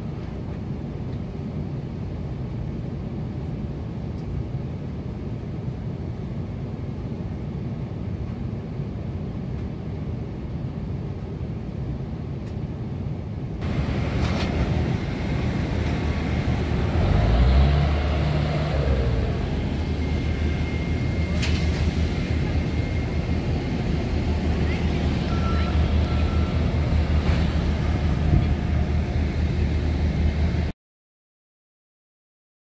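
Steady, even rumble of a jet airliner's cabin in flight. About halfway through it cuts to louder outdoor apron noise: a steady low machine hum that briefly rises and falls in pitch, with some voices.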